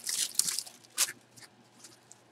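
A cardboard box being handled over a plastic bag: a few short crinkling, scraping rustles, the sharpest about a second in, then quieter.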